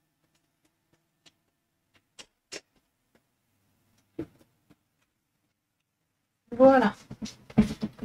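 Mostly quiet room with a few faint light clicks, then a woman's voice speaking briefly near the end.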